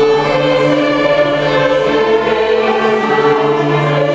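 A small string ensemble of violins and cello accompanying a choir singing a slow classical piece, with long held chords.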